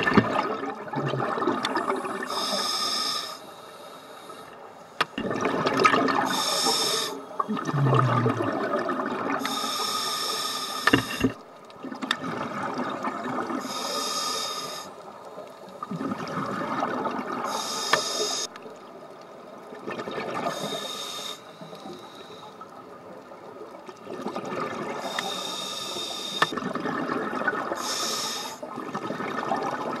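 Scuba diver breathing through a regulator underwater: repeated breaths, each a rush of hiss and bubbling exhaust, with quieter gaps between.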